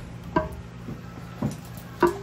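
Cubes of cheese dropped into a stoneware crock pot insert: two soft thuds about a second apart, over a steady low hum.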